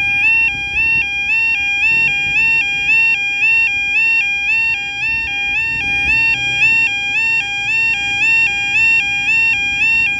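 Railway level crossing yodel alarm sounding, a loud two-tone warble that steps between a lower and a higher pitch about twice a second. It warns that a train is approaching and the crossing is closed.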